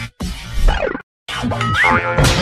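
Short comic music sting for a TV comedy show's logo transition, broken twice by brief silences, with a rising whistle-like glide near the end.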